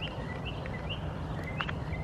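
Steady low background noise with a few short, faint bird chirps scattered through it.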